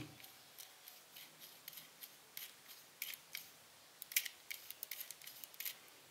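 The metal focusing helicoid of a Konica C35 MF lens turned by hand: a faint little rattle of light, irregular ticks, several a second. The owner puts the rattle down to the helicoid having no grease.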